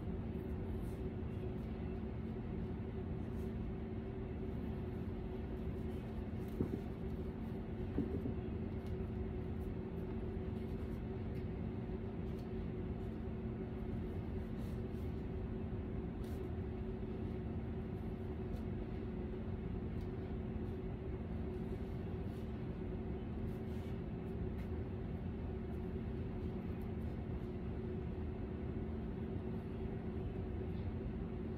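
A steady mechanical hum with two constant tones, like a fan or appliance running, with two faint clicks about six and a half and eight seconds in.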